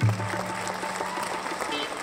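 Studio audience clapping and cheering, with a short held music sting underneath.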